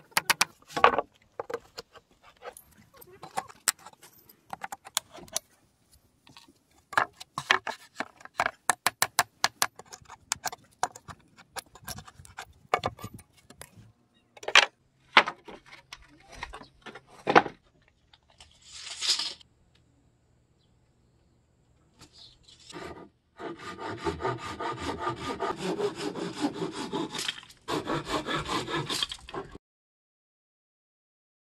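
A claw hammer knocking apart pallet boards: a long run of sharp hammer blows on wood in the first half. Near the end come several seconds of steady, rhythmic scraping strokes on wood.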